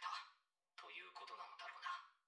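Only faint speech: a quiet voice from the playing anime episode. A phrase ends at the start, there is a short pause, and talk resumes about a second in.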